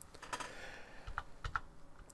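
A few faint, irregular clicks from a computer's keys or scroll wheel while a document is paged through.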